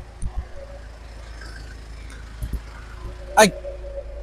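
A light truck's engine idling with a low steady hum, with a few dull knocks around the cab and a brief voice near the end.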